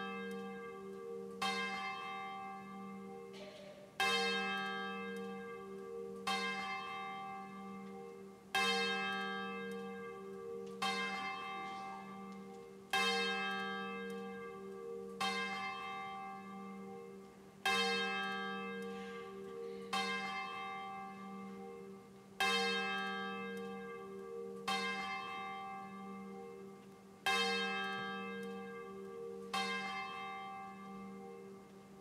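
A single church bell tolling steadily, one stroke a little over two seconds apart. Each stroke rings on and fades before the next, with a deep hum sustaining between strokes.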